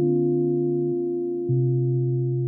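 Kawai MP11SE stage piano holding a soft sustained chord. The bass note changes about a second in, and a new, louder bass note is struck about a second and a half in.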